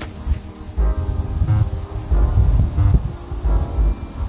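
Insects singing in a steady, high-pitched drone, under gusty wind rumble on the microphone.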